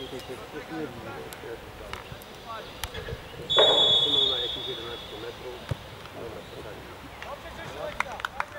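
Referee's whistle blown once, a single shrill blast of about a second midway through, the signal for the free kick to be taken. Faint voices of players and spectators carry underneath.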